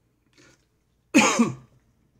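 A man coughing, two quick coughs about a second in.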